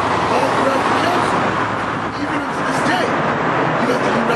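Steady road traffic noise from a busy street, an even rush with no breaks, with a man's voice speaking faintly over it.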